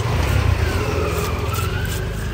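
A motor vehicle passing close by on the road, its engine rumble loudest about half a second in, with a wavering whine over it. Fewer and fainter scraping strokes of a blade taking scales off a large fish are heard in the same stretch.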